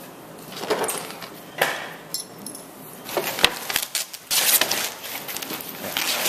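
Metal hand tools clinking as they are picked up and moved off the wooden hull bottom, then, about four seconds in, a longer rough rasp of old canvas ripping as it is peeled up off the bottom planking.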